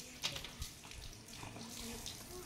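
Faint splashing and trickling water, with a few light knocks.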